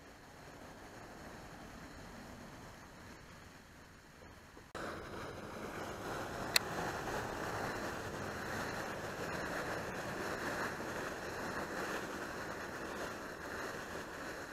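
Steady outdoor rushing noise with no clear pitch, stepping up sharply in level about five seconds in, with a single sharp click about a second and a half later.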